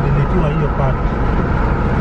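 Steady low road and engine rumble inside a moving car's cabin, under people talking.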